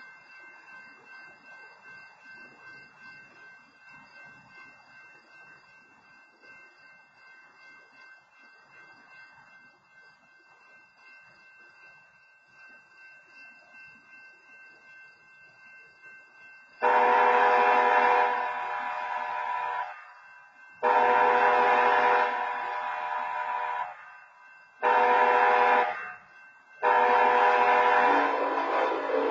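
BNSF locomotive's multi-chime air horn sounding the grade-crossing signal: two long blasts, a short one and a final long one, starting about 17 seconds in. Before it there is only a faint pulsing background.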